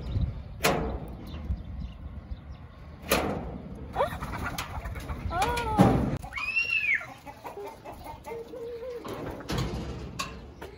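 Chickens calling: several rising-and-falling calls between about four and seven seconds in. Short sharp metal clicks and knocks come in between, from a padlock on a sheet-metal door being worked open.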